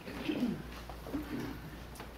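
A low, quiet human voice murmuring in a few short, wavering sounds, about half a second in and again near the middle, over faint room hum.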